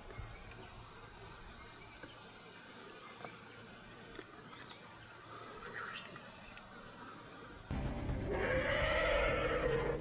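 Faint, even outdoor background at first. Near the end it cuts to an African elephant trumpeting: one long, loud, pitched blast that carries on through the end. The trumpet is a threat call to drive off lions.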